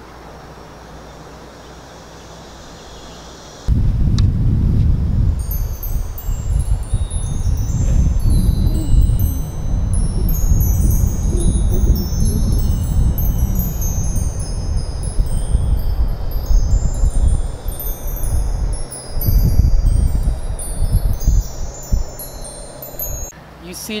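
Tinkling, twinkling chime notes, many high tones overlapping, a magic sparkle effect for a glowing ball of light, starting about five seconds in. Under it, heavy wind rumble on the microphone begins about four seconds in and is the loudest sound.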